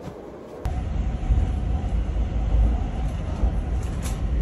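Low, steady rumble of a moving vehicle heard from a seat inside it, cutting in suddenly about half a second in.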